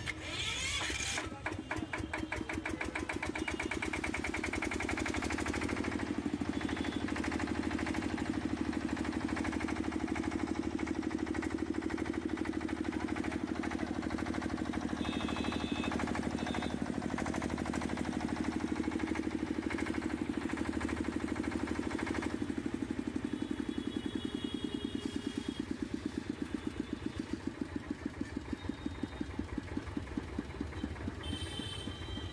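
Field Marshal 10 HP single-cylinder diesel engine of a 7.5 kVA generator set, started on its electric self-starter: about a second of cranking, then it catches and runs with a steady pulsing beat. In the last several seconds the pulses slow and come further apart.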